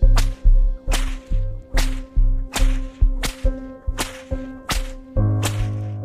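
Sound-effect belt lashes, about eight sharp cracks at an even pace of a little over one a second, over a steady background music pad with a low pulse.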